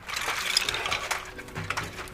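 Plastic Lego bricks covering a mannequin clinking and rattling against each other as it is carried: a dense run of small clicks, busiest in the first second.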